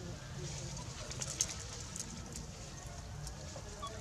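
A bird calling softly and low in the background, with a few light clicks over it.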